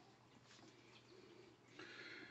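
Near silence: room tone, with a very faint sound near the end.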